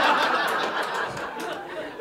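Comedy club audience laughing at a punchline. The laughter is loudest at the start and slowly dies down.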